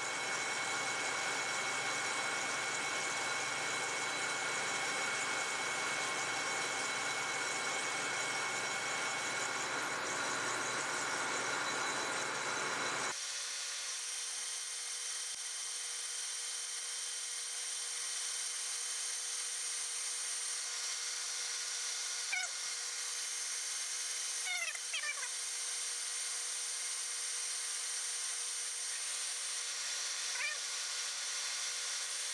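Metal lathe turning a steel bushing with a DNMG carbide insert, taking a heavy dry cut of about a hundred thousandths: steady machining noise with the hum of the running lathe. About 13 seconds in, the low part of the sound drops away abruptly, leaving a thinner steady whir, with a few brief squeaks near the end.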